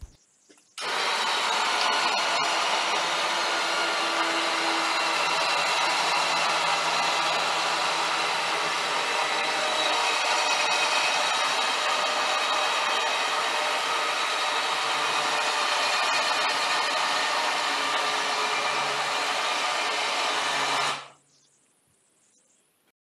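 Electric overhead hoist motor running steadily with a whine, moving a car body shell on its lift. It starts about a second in and cuts off suddenly about a second before the end.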